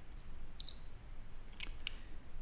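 Faint handling of a Kopfjager Reaper Rest shooting rest, its rubber and metal parts turned in the hands: two brief high squeaks early on, then two light clicks near the end.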